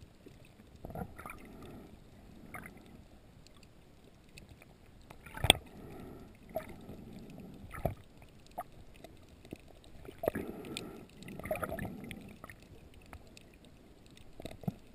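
Muffled underwater sound through a waterproof camera housing: swells of water movement with scattered sharp clicks and knocks, the loudest about five and a half seconds in.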